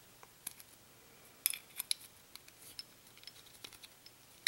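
Light, scattered metallic clicks and taps as a pistol's steel recoil spring assembly is handled and fitted into the slide, the sharpest pair about a second and a half in.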